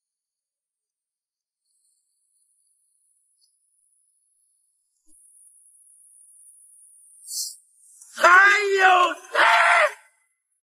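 Silence for the first half, then a faint hiss and a short sharp hiss, followed near the end by a man's loud, wavering cry in two bursts: a pained reaction to the heat of spicy food.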